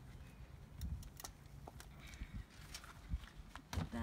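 A few scattered light clicks and rattles of a collapsible wire sewer-hose support being handled and stowed, over a low rumble of wind on the microphone.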